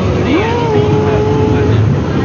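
Peak Tram funicular car moving along the station platform with a steady low rumble and crowd voices. One pitched note rises about half a second in and holds for about a second.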